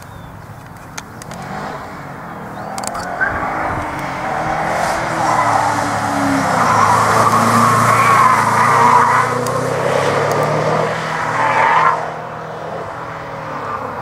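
Subaru Impreza WRX engine driven hard through an autocross cone course, with tyres squealing. The sound builds over several seconds, is loudest about eight seconds in as the car passes, and drops off suddenly about twelve seconds in.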